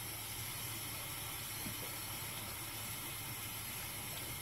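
Bathroom sink faucet running into a sink full of water, a steady hiss with a faint low hum beneath.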